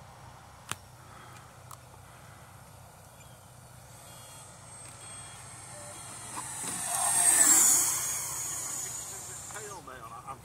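Electric ducted-fan RC jet flying past. The fan's whine builds from about halfway through, peaks with a falling pitch as the jet passes close, then fades. There is a single sharp click near the start.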